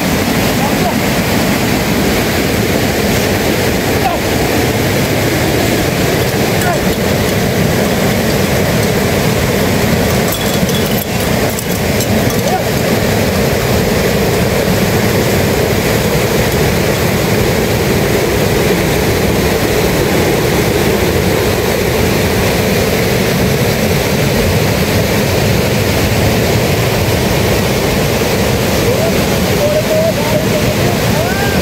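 A swollen, muddy river rushing steadily, a dense unbroken noise.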